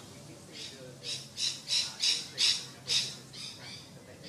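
A bird squawking: a run of about eight short, harsh calls, roughly three a second, loudest in the middle and fading near the end.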